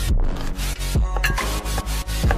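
A santoku knife slicing through an onion onto a wooden cutting board, several quick cutting strokes, each a short rasp and tap on the board. Background music plays under it.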